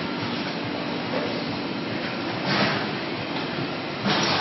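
Steady noise of factory production-line machinery running, with a brief swell a little past halfway.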